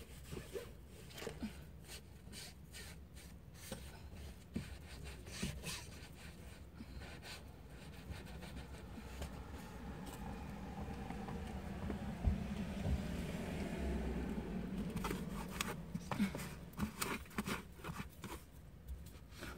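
Rustling, scraping and light knocks of things being handled and shifted around in a car. A low, steady noise swells through the middle and fades near the end.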